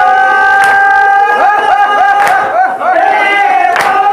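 Men's voices singing a noha (mourning lament) into a microphone: a long held note, then quick turns in the melody, with the group voicing along. Sharp strikes of hands on chests (matam) land about every one and a half seconds, keeping the beat.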